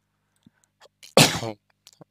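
A man sneezes once, sharply, a little over a second in, louder than his own speech, with a few faint clicks just before it.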